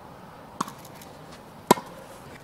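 Tennis ball being struck in a rally: a faint pock about half a second in, then a sharp, louder pock near the end.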